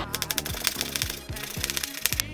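Chef's knife rapidly chopping spring onions on a plastic cutting board: a quick, fast-paced run of sharp knocks. Background music plays underneath.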